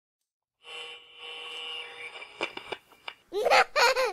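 Intro sounds: a held tone for about a second and a half, two sharp clicks, then two short, high-pitched vocal sounds near the end.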